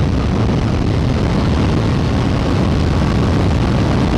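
Suzuki GSX-S 1000's inline-four engine running at highway speed under a loud, steady rush of wind on the microphone.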